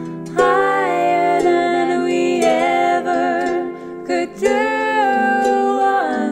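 A woman singing with vibrato over a plucked harp: one phrase starts about half a second in, a short break comes near the middle, and a second phrase ends on a long held note.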